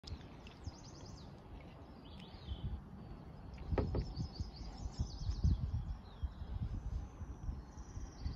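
Small birds chirping and trilling in quick, high bursts around a lily-pad pond, over a low, irregular rumbling that grows louder about four seconds in.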